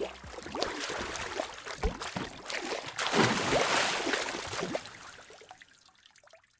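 Water splashing sound effects that rise to a louder splash about three seconds in and fade away near the end.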